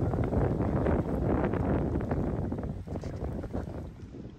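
Wind buffeting the microphone: a loud, rough rumble in gusts that eases off near the end.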